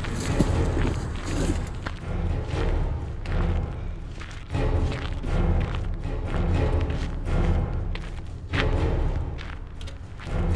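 Film score music with deep thuds recurring through it.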